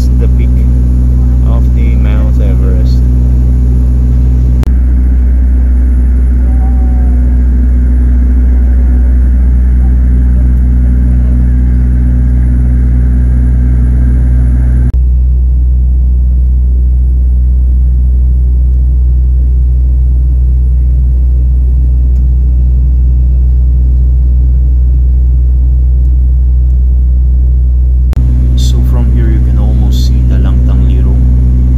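Turboprop airliner's engines and propellers droning in the passenger cabin: a loud, steady low hum made of several steady tones. The drone changes abruptly a few times, at points where clips are joined.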